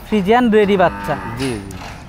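A young dairy cow mooing: a drawn-out call that wavers up and down in pitch, with a short break about halfway through.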